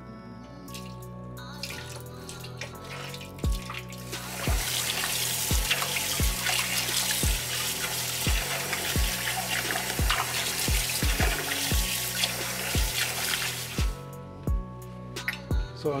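Kitchen tap running into a bowl of raw chicken thighs in a stainless steel sink, water splashing as the meat is rinsed by hand. The water starts about four seconds in and stops near the end, over background music with a steady beat.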